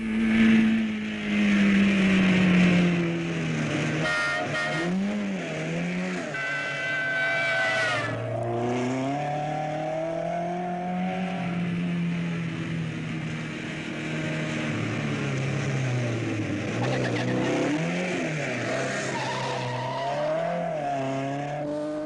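A small car's engine revving hard, its pitch rising and falling again and again as it is driven fast through bends, with tyres squealing twice in the first half.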